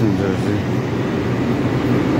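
Coffee vending machine running as it dispenses a drink into a cup: a steady low hum.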